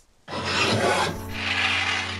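Outro sound effect: a harsh rasping, rushing noise over a low steady hum, starting about a quarter of a second in.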